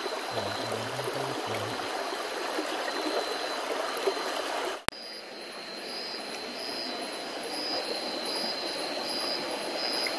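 Shallow forest stream running with a steady rush of water. A sudden break comes about five seconds in, after which a high, pulsing chirp with a steady high whine sits over the water noise.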